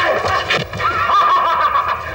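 A man crying out 'ah-ah-ah' in a high, wavering, strained voice, a drawn-out frenzied yell.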